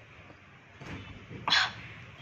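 A person's short, sharp breath sound through the mouth about one and a half seconds in, with a softer breath before it, just after a drink of water.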